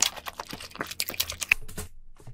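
Eating king crab: a rapid, irregular run of crisp clicks and crackles from chewing the meat and handling the cracked leg shell.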